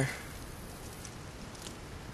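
Quiet outdoor background: a steady faint hiss with a faint tick or two, and no distinct sound event.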